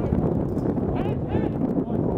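Wind rumbling on the camera microphone over an outdoor field, with short distant shouts from players or spectators about a second in.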